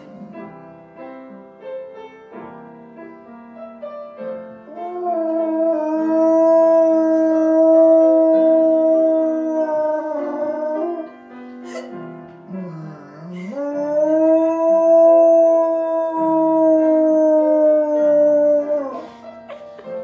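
A dog howling along to music: two long, steady howls, the first starting about five seconds in and the second about thirteen seconds in, over Christmas music.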